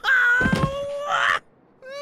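A cartoon character's voice wailing one long, anguished "Nooo!" that breaks off about a second and a half in.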